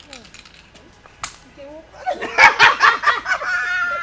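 Loud, excited shouting by several voices, starting about halfway through, after one sharp click about a second in.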